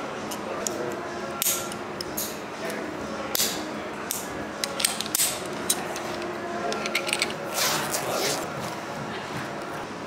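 Metal clicks and clinks of a carabiner and belay device being clipped onto a climbing harness, with a few short rustles of handling. Indistinct voices echo in the background.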